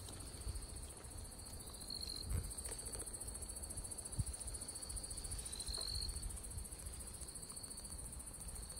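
Night insects calling in a steady, high-pitched, continuous chorus, with a few faint handling bumps.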